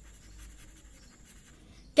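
Pen tip scratching across paper as a word is written by hand: a run of faint, short strokes.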